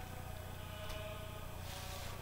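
Faint steady hum over quiet room tone, with no other sound.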